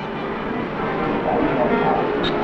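Steady hubbub of a crowd of people talking all at once, with no single voice standing out.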